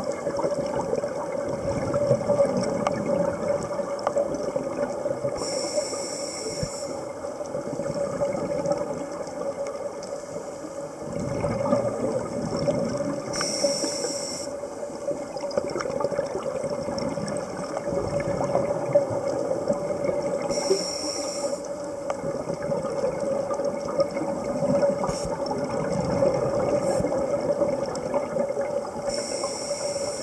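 Underwater sound of a scuba diver breathing through a regulator: a short hiss about every seven to eight seconds, with rushing bubble noise between, over a steady hum.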